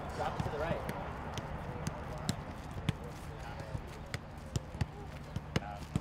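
Soccer ball being kicked and headed around a circle of players keeping it up: irregular sharp thuds, roughly two a second, with faint voices in the background.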